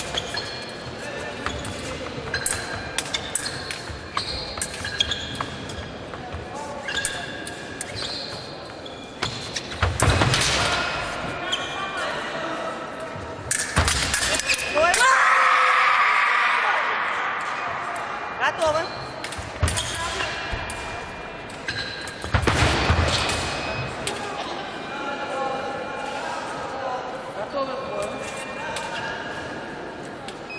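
Sabre fencing: quick sharp clicks and knocks of blades and feet stamping on a wooden floor throughout, with a loud yell about halfway through as a touch is scored.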